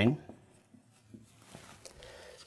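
Faint scratching of a felt-tip marker writing a short word on a whiteboard, in light scattered strokes.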